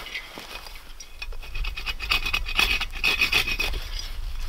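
Bow saw cutting through a thin spruce stem: a run of quick back-and-forth rasping strokes through the wood, growing louder after about a second.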